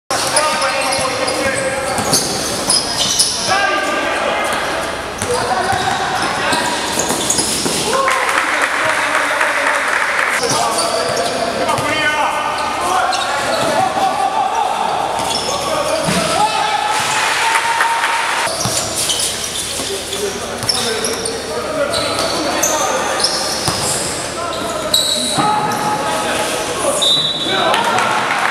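Indoor basketball game in play: the ball bouncing on the court amid indistinct shouting voices of players and spectators, all echoing in a large hall.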